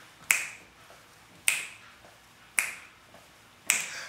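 Four finger snaps about a second apart, keeping a steady beat.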